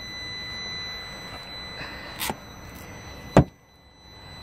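Car cabin fittings being handled: a small click about two seconds in, then a sharp thump near the end, the loudest sound, after which the background hiss drops away.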